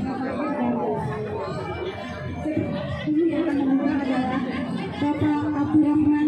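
Several people talking and chattering close by, with one voice holding longer tones near the end. No clear drumming is heard.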